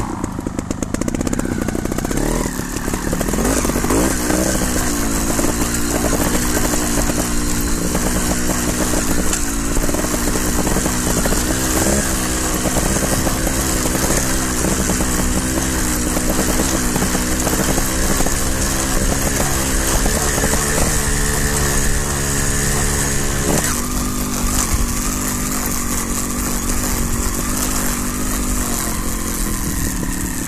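Trials motorcycle engine running under the rider, its pitch rising and falling with the throttle over rough trail, dropping suddenly to a lower, steadier note about three-quarters of the way through.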